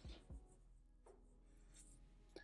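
Faint scratch of a black permanent marker drawing a line on paper, with two soft strokes just after the start, over near silence.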